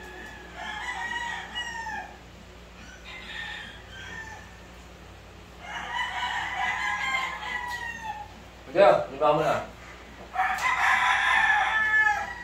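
Gamecocks crowing repeatedly, about four long crows, the second one faint. About nine seconds in, two short, louder, lower-pitched sounds cut in between the crows.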